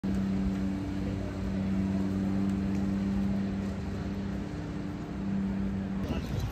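A steady motor hum at a constant pitch over a low rumble.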